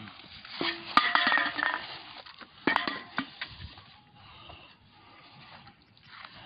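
A few sharp knocks and metallic clinks, the loudest about a second in and another near the three-second mark, each with a brief ringing after it, then only faint rustling.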